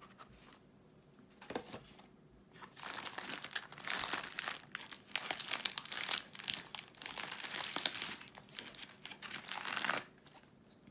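Plastic wrapper of a pack of stroopwafels (Dutch caramel waffles) crinkling and rustling as it is opened and handled to take a waffle out. The crinkling starts about three seconds in.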